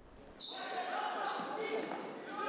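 Game sound of an indoor floorball match echoing in a sports hall: players' voices and shouts, with a few short high squeaks from shoes on the court floor. It starts about half a second in.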